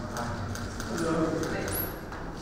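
Hard-soled shoes stepping on a polished stone floor, with a scatter of sharp clicks over murmured voices.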